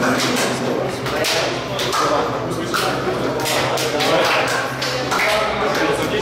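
Several men's voices talking and calling out over one another, none clearly understood, with sharp hand slaps scattered through.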